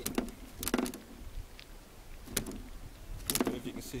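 A few sharp knocks and clicks, about four of them, spaced unevenly, over a low steady rumble.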